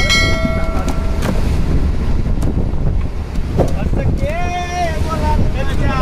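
Steady low rumble on the deck of a fishing boat while fish are sorted out of the net. A held, even tone sounds for about the first second, and a man's short shouted call comes about four and a half seconds in.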